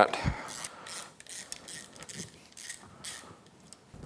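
Hand socket ratchet clicking in several short runs as it backs out the bolts holding an outboard's water pump housing, after a brief low thump near the start.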